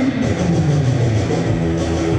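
Runway music: a rock track led by guitar, playing steadily.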